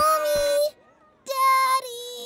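A young boy's voice giving two drawn-out, sing-song cries about a second apart, the first sliding up in pitch before it holds.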